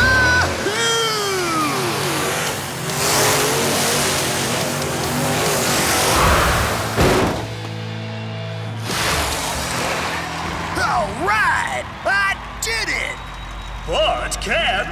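Cartoon monster truck engine revving and a stadium crowd cheering over background music, with a sharp thud about seven seconds in. Voices shout and cheer near the end.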